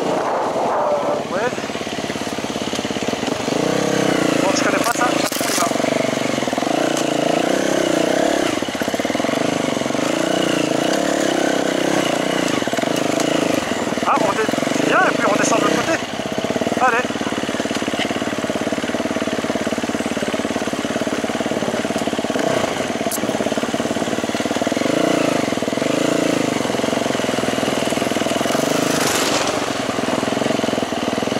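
Enduro dirt bike engine running while riding along a trail, its note rising and falling with the throttle.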